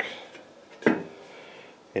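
A single sharp metallic clink a little under a second in, from a metal pencil compass knocking against steel while a wheel rim is being marked out; otherwise only quiet room tone.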